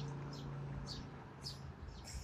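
A small bird chirping repeatedly, short high chirps about twice a second, over a low steady hum that dies away near the end.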